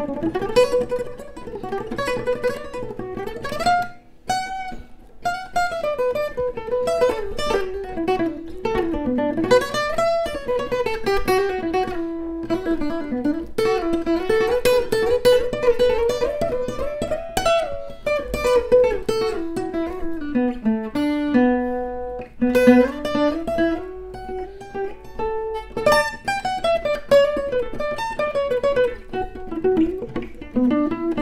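An inexpensive acoustic guitar with old, oxidized strings, played fingerstyle: a melody of single plucked notes rising and falling over bass notes, with a short break about four seconds in.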